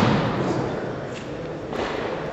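A body hitting a gym mat in a thrown fall, the thud dying away in a large hall, then a softer thump near the end.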